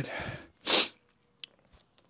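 A single short, loud burst of breath noise from a man, a sharp huff or stifled sneeze, a little under a second in.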